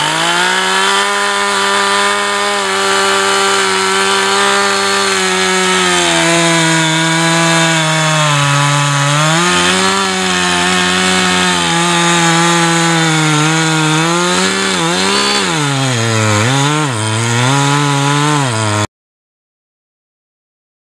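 Two-stroke chainsaw at full throttle cutting into the base of a large red oak trunk. The engine pitch sags as the chain loads up in the wood and then recovers, with several quick dips and recoveries late on. The sound cuts off abruptly just before the end.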